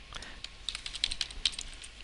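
Computer keyboard typing: a quick, irregular run of keystrokes as a folder name is typed.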